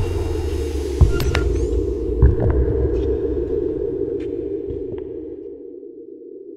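Dark cinematic logo sound effect: a low rumbling drone with two sharp deep hits about a second apart, slowly fading away.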